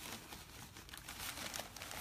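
Faint, irregular crinkling and rustling of a plastic potting-soil bag as soil is poured out of it into a pot.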